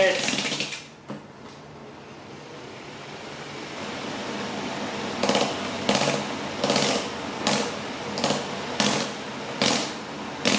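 Small three-speed electric motor running on its highest setting with sandpaper taped to it, grinding against the skin of a leg. The steady grinding builds for a few seconds, and from about halfway a sharper rasping burst repeats roughly every three-quarters of a second.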